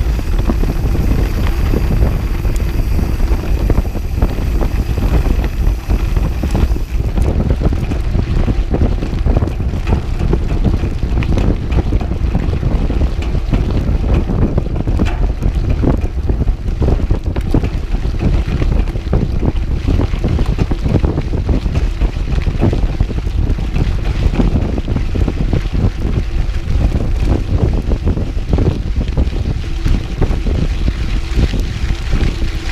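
Wind buffeting the microphone of a GoPro action camera on a cross-country mountain bike being ridden on a dirt fire road. Under it run the rumble of the tyres on dirt and the steady clicking and rattling of the bike over the rough surface.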